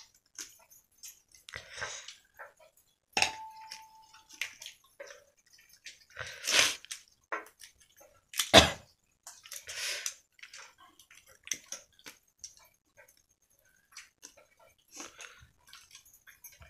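Dry tamarind pods being shelled by hand: brittle shells cracking and snapping in irregular clicks, loudest twice in the middle. One short metallic ring about three seconds in.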